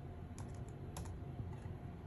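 Laptop keyboard keys being tapped as a number is typed: a handful of light, separate clicks.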